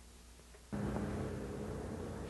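Faint tape hiss, then about 0.7 s in, steady outdoor background noise with a low hum cuts in suddenly at the start of a news field recording.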